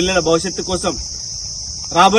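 A steady, high-pitched insect chorus, with a man's voice speaking over it for about the first second.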